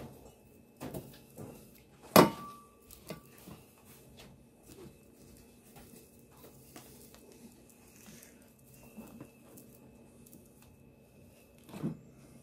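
Seed mix being shaken from a small spice shaker onto a pizza crust on a metal pan: scattered light clicks and taps, with one sharper clink that rings briefly about two seconds in, over a faint steady hum.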